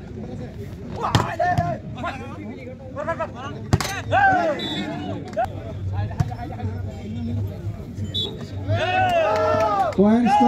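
A volleyball being struck during a rally: sharp smacks about a second in and again just before four seconds. Spectators' voices shout around it, with the loudest burst of shouting near the end.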